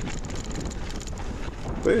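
Wind buffeting the action-camera microphone over the rumble of mountain bike tyres rolling fast on a packed-dirt trail, with a few light clicks and rattles from the bike.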